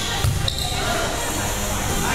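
A volleyball struck sharply once shortly after the start during a practice rally, the hit echoing in a gym hall, with players' voices around it.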